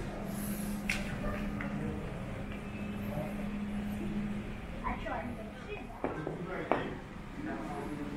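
Large-store ambience: a steady low hum that stops about four seconds in, over a background wash with faint snatches of people's voices.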